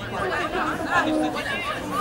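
Several people's voices talking and calling out at once, without clear words.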